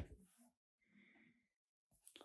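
Near silence, with a faint click at the very start and a soft breath from the narrator about a second in.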